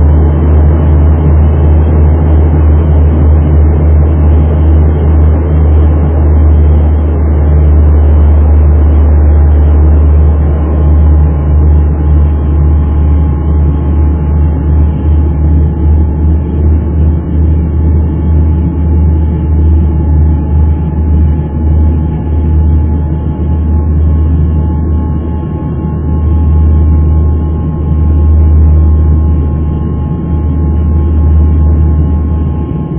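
Turboprop airliner's engines and propellers heard inside the cabin on final approach with the landing gear down: a loud, deep drone that throbs in and out through the middle, with a steady higher whine joining about ten seconds in.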